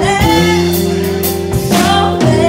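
Live country band playing, with a woman singing lead in long held notes over the band.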